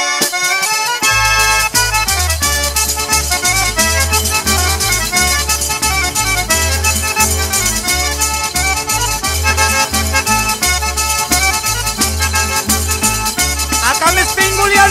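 Instrumental Calabrian tarantella: accordion playing a fast melody over rapid, steady tambourine jingles, with a pulsing bass line coming in about a second in.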